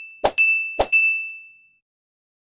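Subscribe-and-bell animation sound effect: two short clicks, each followed by a bright bell-like ding that rings on and fades away about a second and a half in.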